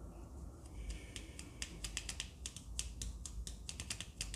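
A quick run of light, irregular clicks, several a second, beginning about a second in.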